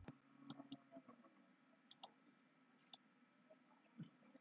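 Faint, irregular computer mouse clicks, several short sharp clicks spread over near silence.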